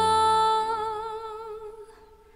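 Female singer holding a long sung note with vibrato while the backing drops away beneath it, the note fading out near the end as the song closes.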